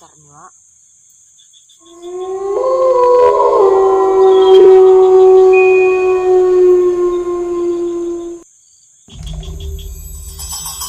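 A loud, sustained droning tone of several layered pitches that swells in about two seconds in, sags slightly in pitch and cuts off abruptly after about six seconds. Music with drums and cymbals starts near the end.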